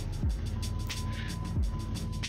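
Background music with a steady beat: low thumps about every three quarters of a second under fast, even ticking, over a sustained low bass.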